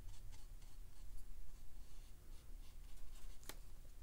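Faint brushing of a round watercolour brush stroking paint onto cotton cold-press watercolour paper, with a single light click about three and a half seconds in.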